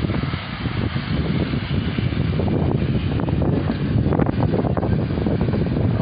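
Wind buffeting the phone's microphone: a loud, rough rumble with crackling.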